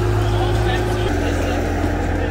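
Compact track loader's engine running at a steady speed, then stepping down to a lower pitch about a second in.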